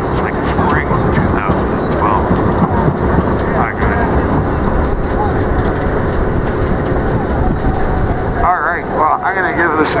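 Steady street noise of a busy city square: traffic and a tram passing, with people's voices in the background. Near the end, a voice with a wavering pitch comes in over it.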